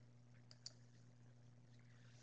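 Near silence in a narration pause: a faint steady low hum, with two faint, quick clicks a little over half a second in.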